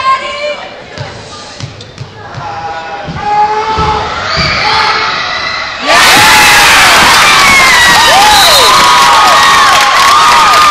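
Basketball gym crowd shouting, with a few low thuds, then about six seconds in a sudden loud burst of crowd cheering and screaming that carries on to the end.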